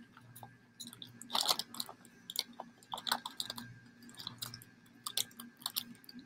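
Scissors cutting through a plastic grain spawn bag, with the plastic crinkling: a string of irregular snips and crackles.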